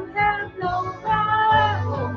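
A woman singing a contemporary worship song over a backing track, with long held notes, the longest and loudest in the second half.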